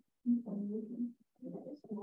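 Indistinct, muffled talk in a small room: two short stretches of low mumbled voice that cannot be made out as words.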